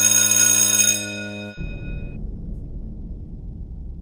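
A ship's horn sounding one low steady note, with a high ringing tone over it that cuts off about a second in and fades away. The horn stops about a second and a half in, and a low rumbling noise carries on.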